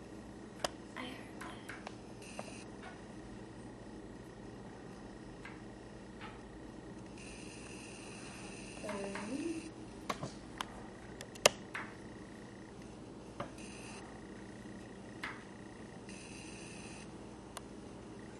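Faint audiometer test tones leaking from headphones, switched on and off in separate presentations of about half a second to two and a half seconds. Sharp clicks from handling of the equipment, the loudest about two-thirds of the way in.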